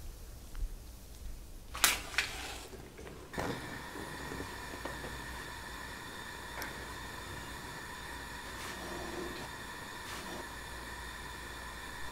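Two sharp clicks about two seconds in, then a steady hiss with a faint high hum from a lit gas hob burner.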